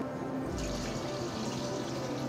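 Milk poured steadily from a plastic measuring pitcher into a stainless steel pot, the pour starting about half a second in, over background music.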